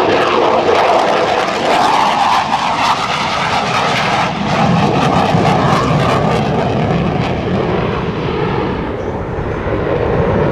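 McDonnell Douglas F-15C Eagle's twin turbofan engines in afterburner during a low pass and pull-up: a loud jet roar that deepens in pitch as the jet passes and climbs away, with rapid crackling through the middle.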